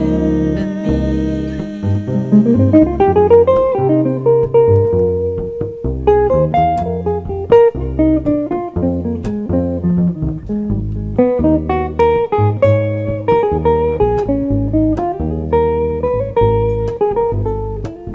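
Jazz guitar solo on a hollow-body archtop guitar: single plucked notes and quick runs, including a rising run a few seconds in, over a double bass line.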